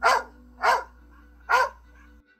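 Dog barking, three sharp barks about three-quarters of a second apart.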